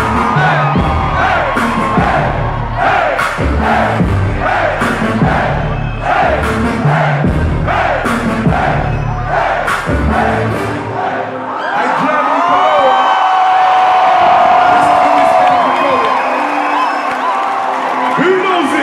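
Live hip-hop concert heard from inside the crowd: a heavy bass beat with the crowd shouting along. About eleven seconds in the beat cuts out and the crowd keeps cheering and yelling loudly.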